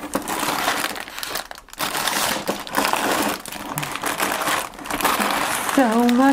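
Clear plastic bags of LEGO bricks crinkling and rustling as they are handled and drawn out of a cardboard box, with a brief pause just before two seconds in.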